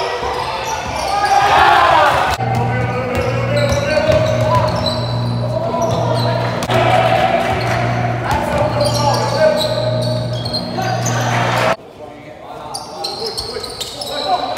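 A basketball bouncing on a sports-hall floor amid spectators' and players' voices during a game. The sound changes abruptly twice, and a low hum pulses about once a second through the middle stretch.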